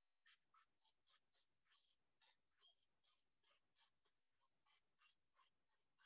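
Near silence, with only very faint, quick scratchy strokes, about four or five a second.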